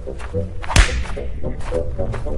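A single sharp whip-like crack with a low thud, a cartoon sound effect, about three-quarters of a second in, over staccato music of short repeated notes.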